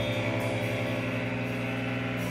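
Electric guitars and bass held on one sustained chord through their amplifiers, ringing out steadily with no drums: the band letting the last chord of a rock song ring.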